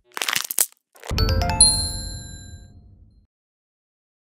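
A news channel's outro sound effects: a few quick swishes, then about a second in a low hit with bright ringing chimes that fade away over about two seconds.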